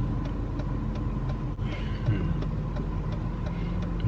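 Steady engine and road noise inside a moving car's cabin.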